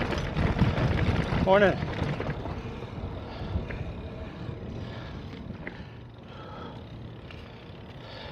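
Wind and riding noise on a cyclist's microphone while pedalling along a path. It is loudest in the first two seconds and then eases off, with a few faint short chirps.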